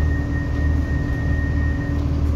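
Cabin noise of an Irish Rail 29000 class diesel multiple unit rolling slowly: a steady low engine hum with a thin high whine that stops near the end.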